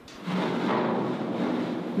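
Ship's hull pushing through sea ice: a steady grinding, rushing noise of ice floes breaking and scraping along the hull, starting a moment in.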